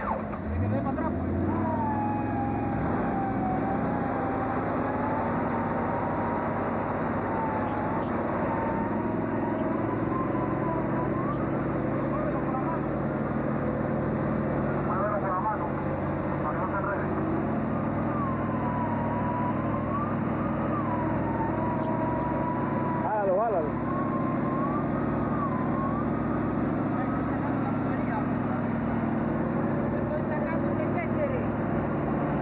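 A tractor engine running steadily, with a high whine that wavers up and down in pitch over it and a single knock a little over two-thirds of the way through.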